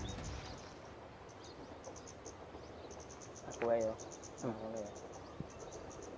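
Insects chirping in quick, faint, high-pitched pulses, with a short pitched vocal sound about three and a half seconds in and a weaker one a second later.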